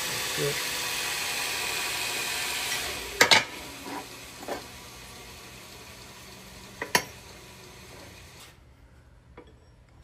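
A steady hiss that fades gradually over several seconds and cuts off near the end. A few light knocks of steel parts being handled on a steel welding table come through it.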